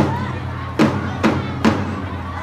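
Snare drums of a Young Pioneer drum team beating a marching rhythm, sharp strikes coming about twice a second, over a steady low hum and crowd chatter.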